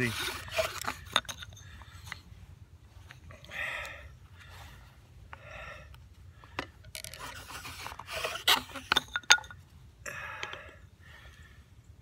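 Bow drill running: a yucca spindle scraping against a yucca hearth board as the bow strokes back and forth, heaviest in the first second and again from about seven to nine and a half seconds in. Heavy breathing from the effort comes between the spells of drilling.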